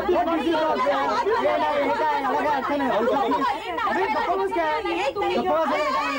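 Several people talking over one another at once: continuous overlapping chatter of a group of men and women.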